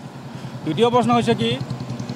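A man speaking briefly about a second in, over low steady road-traffic noise.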